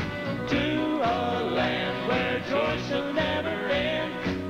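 Male vocal quartet singing a country-gospel song in close harmony, with upright piano accompaniment.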